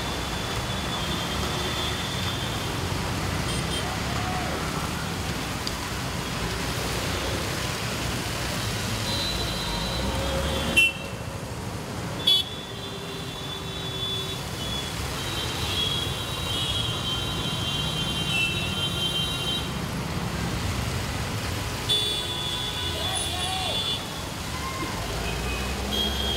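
Road traffic on a rain-wet street: engines running and tyres hissing on wet asphalt, with car horns sounding now and then. Two brief sharp clicks come near the middle, with a short quieter stretch between them.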